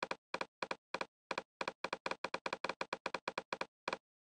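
A rapid run of short computer clicks, about eighteen in four seconds, coming faster through the middle. They are the clicks of stepping the Smaart signal generator's pink-noise level up one step at a time.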